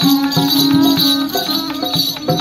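Live Punjabi folk music: a dholki drum beats a steady rhythm while a bowed string instrument plays the melody over a held low note, with a jingling rattle in the percussion.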